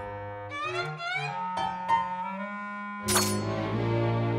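Cartoon orchestral score led by bowed low strings: quick rising runs, then a held note, with a sudden loud hit about three seconds in that opens into a fuller sustained chord.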